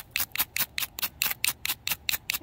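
A ferrocerium fire-starter rod scraped hard and fast with a striker, about six or seven short, sharp strokes a second, showering sparks onto grass-and-twig tinder that is not dry enough to catch.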